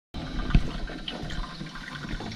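A Braun drip coffee maker brewing: a steady watery hiss with scattered crackles, and a single thump about half a second in.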